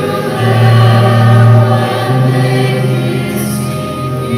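Choir singing with organ accompaniment, over long held bass notes that change every second or two.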